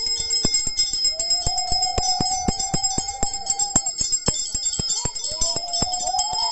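Brass hand bell rung continuously for a Hindu pooja aarti, its clapper striking several times a second over a steady high ring. A held, slightly wavering tone sounds alongside it, breaking off for about a second after the middle and coming back near the end.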